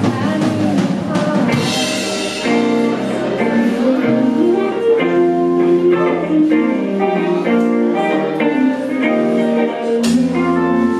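A live rock band playing a song on electric guitars, bass guitar and drum kit, with steady, loud music throughout.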